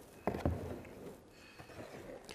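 Spoon stirring colour into wet plaster in a tray: a soft knock about a quarter second in, then faint wet stirring.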